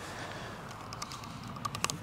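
Quiet outdoor background with a few faint small clicks and rustles in the last half second, from a person moving and handling things.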